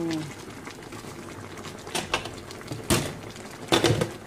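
Vinegar-and-water paksiw sauce simmering in an uncovered wok, a steady low bubbling. It is broken by a few sharp knocks of kitchenware against the wok: a strong one about three seconds in and a quick cluster just before the end.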